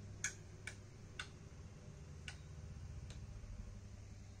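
Faint handling clicks, about five at uneven intervals and mostly in the first three seconds, over a low steady hum.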